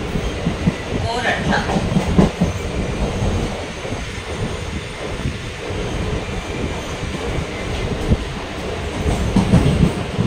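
Passenger train coach in motion, heard from its open doorway: continuous running noise of steel wheels on the rails, with irregular knocks and rattles from the track.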